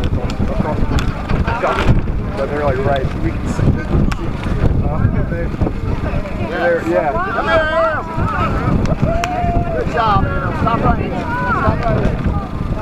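Wind buffeting the microphone in a steady low rumble, with indistinct voices of people talking, clearest in the second half.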